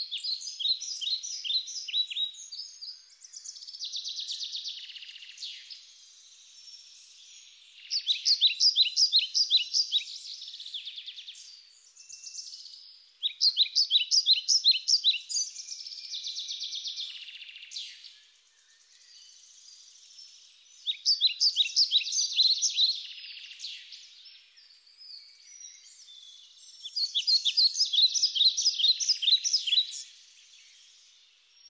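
A small bird singing: a high-pitched trill of rapid notes about two to three seconds long, repeated five times with pauses of several seconds. Fainter chirps fill the gaps.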